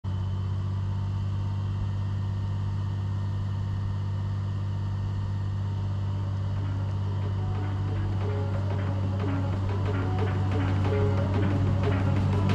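A snowcat's engine running steadily with a low drone as the tracked machine comes closer, mixed with background music that becomes more prominent in the last few seconds.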